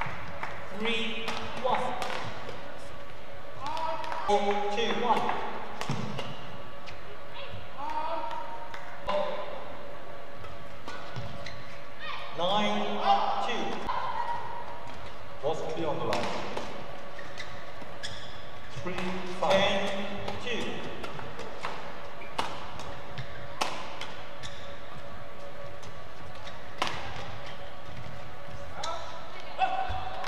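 Badminton rallies: sharp clicks of rackets striking the shuttlecock again and again, with short shouts from the players at intervals.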